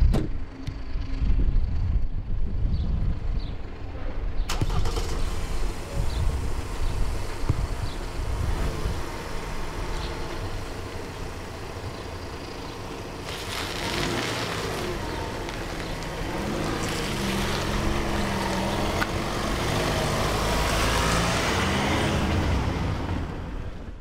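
A motor vehicle engine running with a low rumble, with one sharp knock about four seconds in. From about fourteen seconds in, the engine note rises and falls in pitch several times as the vehicle moves off, then fades near the end.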